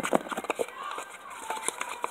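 Spoon stirring glue and Tide detergent in a plastic container: a few quick clicks and scrapes in the first half second, then quieter stirring.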